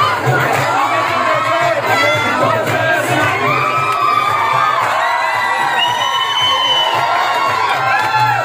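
A crowd of office colleagues cheering and shouting together, many voices at once, with a few long high whoops in the second half.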